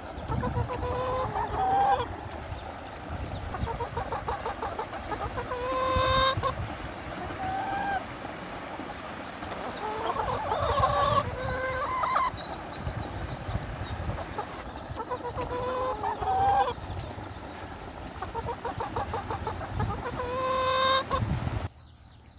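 Chickens clucking: every few seconds a run of quick clucks ends in a longer drawn-out note, over a steady background rush.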